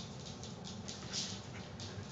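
A dog's claws ticking on a laminate floor as she trots about, a few light clicks a second.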